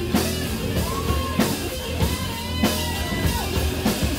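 Live rock band playing an instrumental passage: electric guitar lead with bent, sliding notes over drum kit and bass, with drum hits about every 0.6 seconds.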